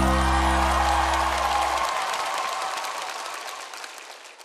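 A live band's closing chord is held and fades out within the first two seconds, under studio-audience applause that dies away steadily toward the end.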